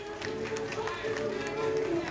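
Background music with long held notes, over faint voices in a large hall.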